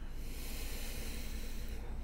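A woman's deliberate in-breath through the nose, drawn audibly and steadily for nearly two seconds on a guided-meditation "breathe in" cue.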